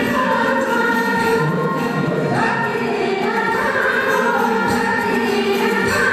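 Live Nepali lok dohori folk song: women singing into microphones over music, steady and loud throughout.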